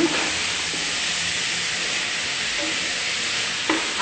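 Chopped garlic and onion frying in oil in an aluminium pot around a browned beef shank, a steady sizzle, while a wooden spoon stirs them.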